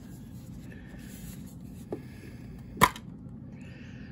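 A metal steelbook Blu-ray case being handled and opened: faint rubbing, a small click about two seconds in, and a sharper click near three seconds in as the case comes open.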